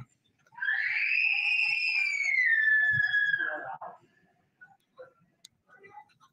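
A young child's long, high-pitched scream, rising slightly and then falling in pitch before fading out about four seconds in.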